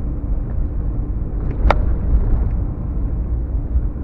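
Ram 1500 pickup driving, heard from inside the cab: a steady low rumble of engine and tyres on a dirt road, with one sharp click a little under two seconds in.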